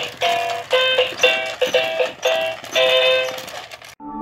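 Electronic toy tune from a battery-powered dancing goose toy: short, bright notes about two a second. The tune fades and stops just before the end.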